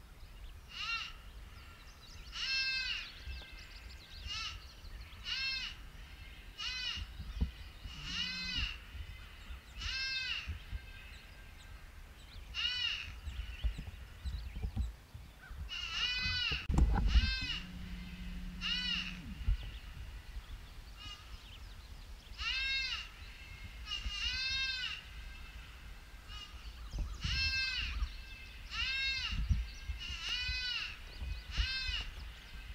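Predator call sounding a long series of bleating distress cries, each a short wail that rises and falls in pitch, repeated about once a second in runs with short pauses. Low rumble of wind or handling on the microphone underneath, with a louder bump about halfway through.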